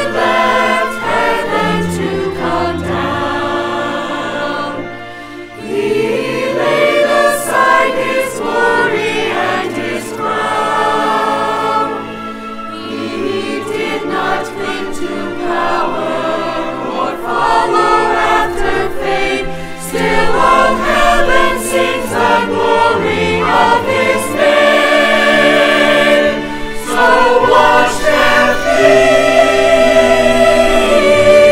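Mixed choir of men's and women's voices singing in parts, the sound swelling and easing, with a brief dip about five seconds in.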